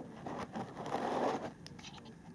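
Faint scraping and rustling as a model locomotive's tender is lifted by hand out of a foam-lined display case, the sound building towards the middle.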